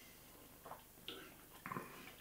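Near silence: quiet room tone with a few faint, brief sounds in the second half.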